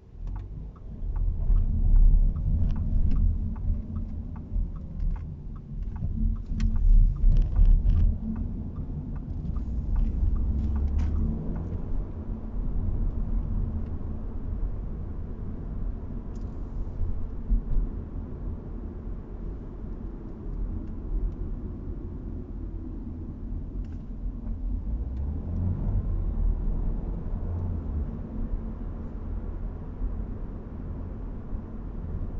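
Audi A4 Avant heard from inside its cabin as it pulls away and drives on: a steady low engine and road rumble that swells as the car moves off, with a few louder bumps several seconds in. A regular light ticking runs through the first few seconds.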